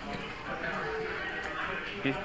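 Quiet background table audio from a casino poker livestream: a low murmur of distant voices and room noise.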